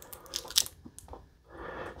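A few short crinkles and rustles of a clear plastic sleeve handled in the fingers against a cardboard box, mostly in the first second, then a faint rustle near the end.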